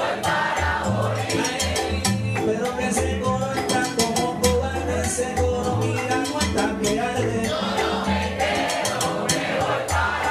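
Live salsa band playing: piano, a bass line and timbales and other hand percussion keeping a steady rhythm, with a male lead singer.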